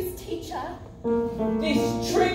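Singing with piano accompaniment, quieter and wavering at first, then a held note from about a second in.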